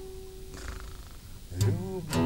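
Classical guitar: a single held note rings on and fades away over the first second. A chord is strummed again near the end.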